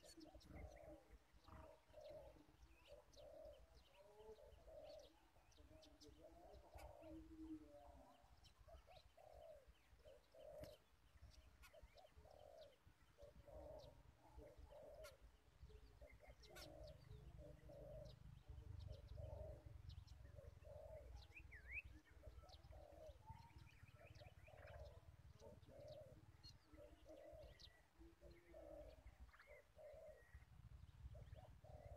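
Dove cooing faintly: a long, even string of short, low coos, a little more than one a second, with faint small-bird chirps above.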